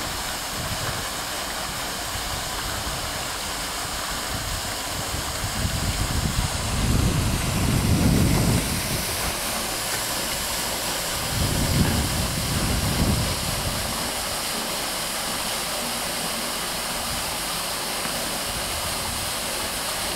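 Steady rushing and splashing of water pouring from the discharge pipe of a 2 HP solar water pump, running at about 260 litres a minute. Twice in the middle a low rumble swells up and fades over it.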